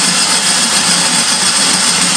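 Nostalgia electric snow cone maker running, its motor-driven blade shaving ice cubes into snow. It makes a steady, loud grinding whir with a low hum and a high whine.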